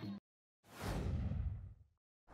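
Whoosh sound effect of an animated subscribe title: one sweep that swells in and fades away over about a second, its high end dying first. Just before it, the recorded ceremony sound cuts off abruptly.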